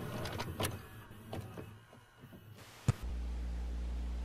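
VHS-playback sound effect: a tape mechanism whirring and clicking, fading away over the first two seconds. A sharp click comes just before three seconds in, then a steady low hum.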